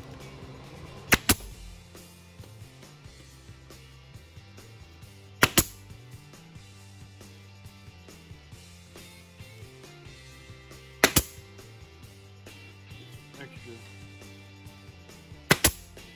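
Hitachi pneumatic stapler firing four times, several seconds apart, each shot a sharp double crack as it drives a staple through wire mesh into the wooden frame.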